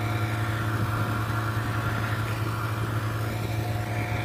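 Polaris Indy 500 snowmobile's two-stroke twin engine idling steadily, a constant low hum.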